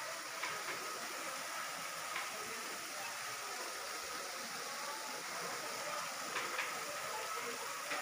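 Steady rush of water falling in thin streams down an artificial rock-wall waterfall.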